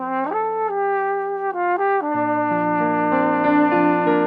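Flugelhorn playing a melody with keyboard accompaniment: the horn comes in at the start with a few stepped notes, then holds one long note as lower piano notes join about halfway through.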